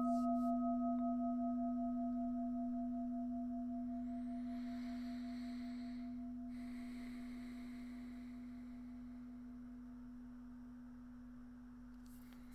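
A meditation bell rings out after a single strike, one low sustained tone with a few higher overtones that fades slowly and evenly; the highest overtone dies away after a few seconds. It is the mindfulness bell, sounded to call listeners back to their breathing.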